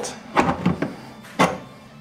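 Adjustable crescent wrench working a brass flare nut on a mini-split service valve: a few short metallic clicks and knocks as the wrench is shifted and the nut is snugged up by feel.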